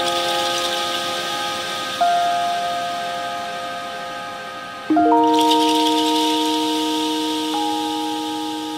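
Downtempo chillout music with no beat. Slowly fading chords are struck anew about two seconds in and again about five seconds in, with a soft hiss above them.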